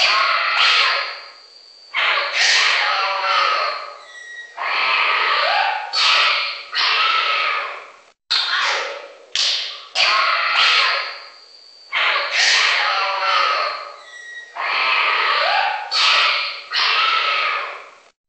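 Wild animal calls from a sound-effect track: a string of loud cries and calls, each starting suddenly and fading away, with a rising call about six seconds in. The same sequence of calls repeats as a loop about every ten seconds, with a brief gap near the middle where it restarts.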